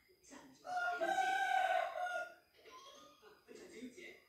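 A rooster crowing once, one long call lasting about a second and a half, starting just under a second in.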